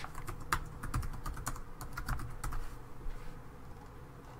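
Typing on a computer keyboard: a quick run of keystrokes that thins out and stops about three seconds in.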